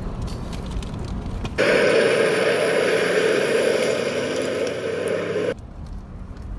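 Car tyres rolling over a gravel driveway. About a second and a half in, a much louder rushing, scraping noise cuts in suddenly, runs for about four seconds and stops abruptly.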